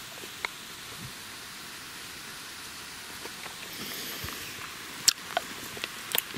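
Steady outdoor background hiss with a few small sharp clicks, the loudest about five seconds in.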